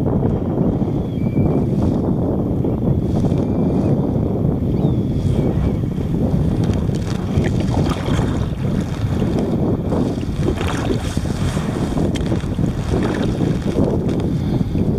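Wind buffeting the microphone in a steady low rumble, with water splashing and slapping against the hull of a moving sea kayak, the splashes more frequent in the second half.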